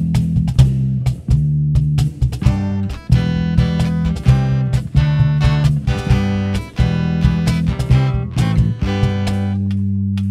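Live band instrumental intro: electric bass guitar and strummed acoustic guitars playing, ending on a held chord in the last second.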